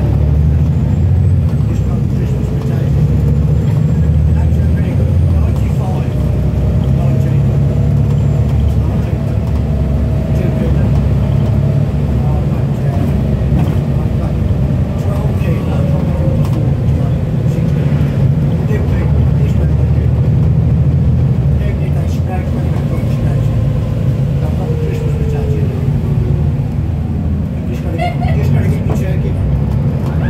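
Volvo B7TL double-decker bus's diesel engine and driveline heard from inside the passenger saloon while driving: a steady low drone, with a faint whine that rises slowly and then falls gradually through the second half as the bus changes speed.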